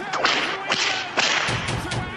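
Sound effects for an animated end card: a few sharp whip-like cracks and swooshes, the loudest about a quarter second in.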